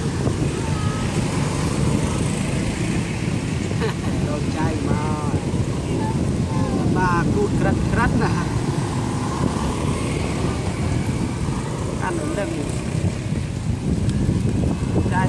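Road traffic passing close by, a steady low rumble of car and motorcycle engines and tyres. A few short wavering high calls break in around the middle.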